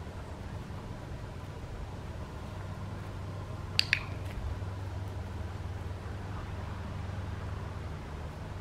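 A dog-training clicker sounds once about four seconds in, as a sharp double click, over a steady low background rumble. It is the marker for the puppy catching up to the handler's left side.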